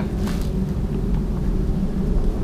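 Steady low rumble of wind on the microphone, with a faint click or two of the perspex screen extender being handled about a third of a second in.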